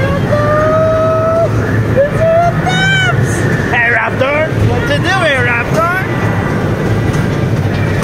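High-pitched wordless vocalising, like a young child's voice: a long held note, then a quick squeal and a run of rapid rising and falling cries a few seconds in. Underneath is a steady low rumble.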